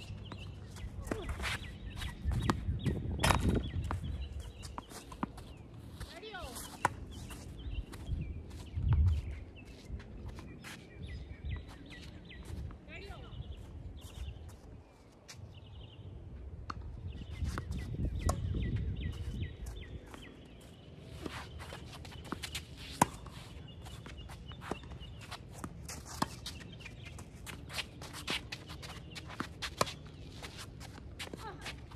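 Tennis rally on an outdoor hard court: sharp racket strikes on the ball and ball bounces, spaced a few seconds apart, with footsteps scuffing on the court between shots.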